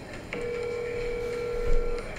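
Smartphone on speaker playing the ringing tone of an outgoing call: one steady, unbroken tone that starts about a third of a second in and lasts to the end. A low thump sounds near the end.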